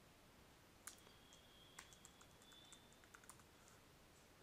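A handful of faint, scattered computer keyboard keystrokes over near silence.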